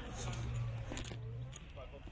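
Distant voices with a few faint metallic clinks, over a low steady hum that fades after about a second and a half.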